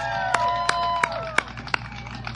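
Live audience applauding and cheering: scattered sharp claps with several held whoops, dying down near the end.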